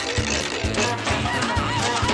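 Cartoon background music with a steady bass beat. From about half a second in, high-pitched, squeaky cartoon voices chatter over it.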